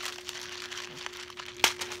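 Clear plastic bead-kit boxes being handled, with light crinkling and clicking of plastic and one sharper click about one and a half seconds in. A faint steady hum runs underneath.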